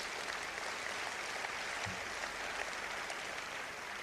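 A large audience applauding, a steady even clapping that eases off slightly just before the end.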